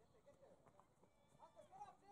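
Faint, distant voices calling and shouting, with the loudest call shortly before the end.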